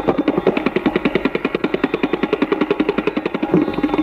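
Tabla playing a very fast, dense run of strokes, more than ten a second, mostly on the treble drum (dayan), which rings at one steady pitch. It is solo tabla in the Benares gharana style.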